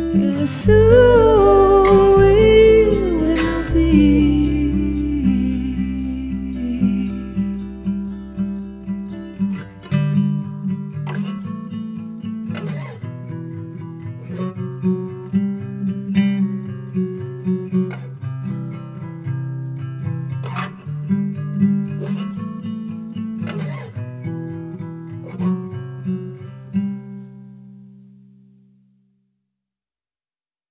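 Closing bars of a singer-songwriter song: a last sung phrase over acoustic guitar in the first few seconds, then the acoustic guitar picking and strumming on its own, fading out near the end.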